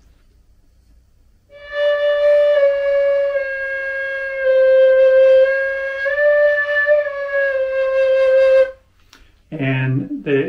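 Hybrid flute (a Red Kite Native American-style flute mouthpiece on a Guo New Voice composite concert flute body) playing one unbroken phrase of about seven seconds, starting about a second and a half in and stopping near the end. It moves in small steps among a few neighbouring notes.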